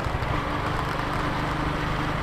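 Engine of the vehicle carrying the camera running steadily at low speed, heard from on board: a constant low hum with road noise.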